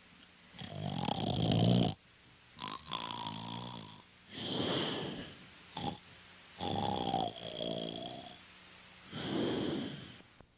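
Raspy, wheezing snorts or breaths close to the microphone, about six in a row, most lasting a second or more, with short pauses between them.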